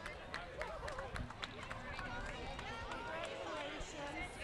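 Scattered hand clapping from a few people, with several voices chatting in the background.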